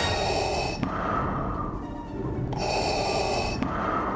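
Darth Vader's mechanical respirator breathing, a slow rasping inhale and hissing exhale, repeated twice.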